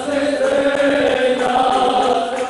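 A chorus of male voices from a student tuna singing together, holding long sustained notes.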